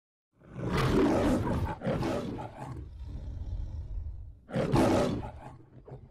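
Loud roaring sound in two surges: a long one starting about half a second in and a shorter one near the end, with a low rumble between them, fading out at the close.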